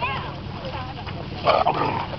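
A dog barks once, loudly, about a second and a half in, among people's voices.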